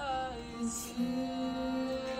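A slow song playing in the background, its sung melody settling into a long held note about halfway through.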